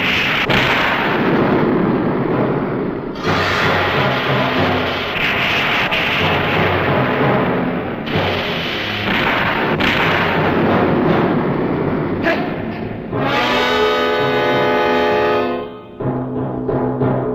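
Orchestral battle music with timpani and brass, mixed with explosion and rushing gas-spray sound effects. Near the end a long held, buzzing note sounds for a few seconds.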